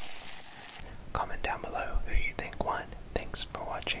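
Close ASMR whispering into a microphone, with sharp mouth clicks, starting about a second in. Before it comes a brief soft crinkly hiss from an object rubbed at the ear of a dummy-head microphone.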